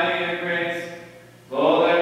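Maronite liturgical chant sung into a microphone in long held notes. It fades away about a second in and a new phrase begins at about a second and a half.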